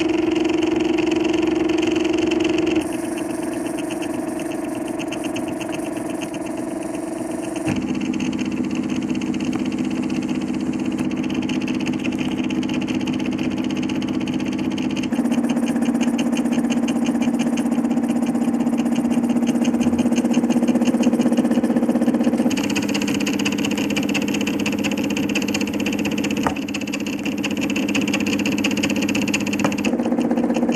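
Stepper motors of a MakerFarm Prusa i3 3D printer whining as the print head traces the first layer. The pitch of the hum shifts in steps every few seconds as the moves change speed and direction.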